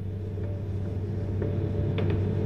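Steady low mains hum on an old recording, with faint sustained tones behind it.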